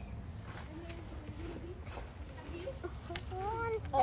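Faint voices in the background, with a few soft clicks.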